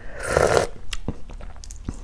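Eating from an opened balut, a boiled fertilized duck egg, held to the mouth: one short, wet slurp near the start, then a few faint mouth clicks.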